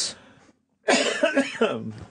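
A man coughing, one harsh burst about a second long starting about a second in.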